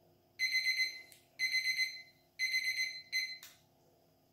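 Digital kitchen timer's alarm beeping at the end of a two-minute countdown: three bursts of rapid, high-pitched beeps about a second apart, then a shorter fourth burst that stops with a click as it is switched off.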